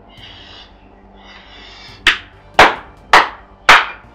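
Four gunshots, evenly spaced about half a second apart, start about halfway in; each is a sharp, loud bang with a short ringing tail.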